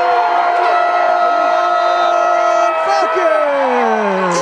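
A long drawn-out shout held on one pitch for about three seconds, falling in pitch near the end, over a crowd cheering a touchdown.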